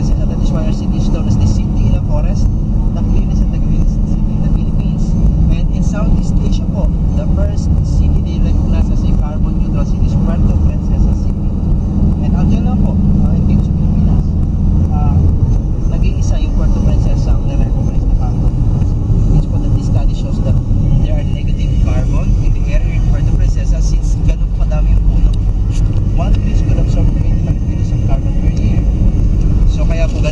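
Engine and road noise of a moving passenger vehicle heard from inside the cabin, a steady low hum whose note shifts about halfway through, with people's voices mixed in.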